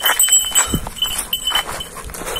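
Metal chain leash clinking and rattling as a young Kangal dog walks and pulls on it, with a brief falling dog sound about three-quarters of a second in.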